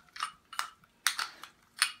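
Sharp metal clinks and clicks, about four of them, as a hand-held blade wrench is twisted to screw the blade assembly back into a Robot Coupe MP450 power mixer's metal bell housing.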